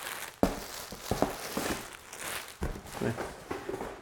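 Plastic-bagged clothing being handled and unpacked from a cardboard box: irregular crinkling of the plastic wrap, with a few soft knocks as items are moved and set down.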